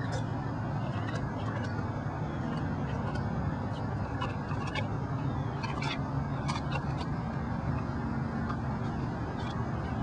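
A tiger eating a whole chicken, with scattered short sharp cracks and crunches of bone over a steady low engine hum.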